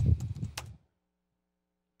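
Computer keyboard keys clicking over a dull thump on the desk, a single burst of under a second at the start, followed only by a faint steady hum.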